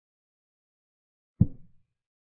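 Chess program's move sound effect: a single short, low wooden-sounding thud of a piece being set down, about one and a half seconds in, for a quiet rook move rather than a capture.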